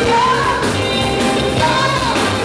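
Live afrobeat band playing, with a woman singing lead into a microphone over electric guitar, bass guitar, congas and drum kit; her sung phrases rise and fall over a steady groove.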